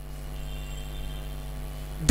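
Steady electrical mains hum in the recording: a low, unchanging hum with many evenly spaced overtones.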